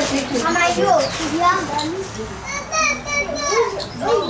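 Several people talking, among them high-pitched child voices.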